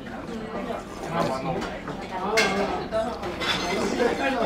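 Background voices of diners chattering and a television in a busy restaurant, with the light clink of dishes.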